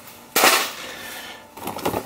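A sharp clatter about half a second in, fading into softer rustling and knocking, as items are handled in a cardboard box and a hand-operated fluid transfer pump with a red hose is picked up.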